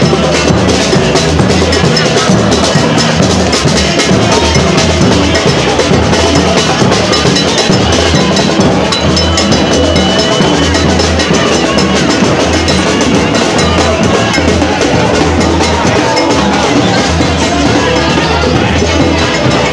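Live street percussion: a large drum and a cowbell played by hand in a fast, steady rhythm, loud throughout.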